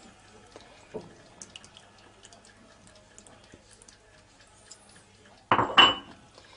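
Cooking oil poured from a mug into a glass bowl of grated carrot batter: a faint liquid trickle with small scattered clicks. A short burst of voice comes near the end.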